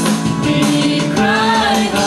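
A youth choir of mostly female voices singing a gospel song in unison into microphones, over instrumental accompaniment.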